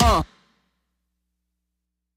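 The tail of a voice gliding in pitch, cut off abruptly about a quarter of a second in, then dead digital silence.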